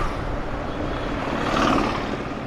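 A small two-wheeler's engine running steadily at low road speed, with road and air noise while riding.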